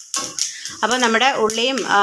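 Wooden spatula stirring and scraping shallots and dried red chillies in oil in a nonstick kadai, a few short scrapes in the first second. A woman starts talking about a second in.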